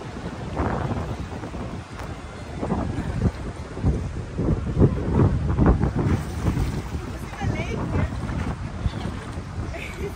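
Wind buffeting the microphone in irregular gusts, strongest around the middle.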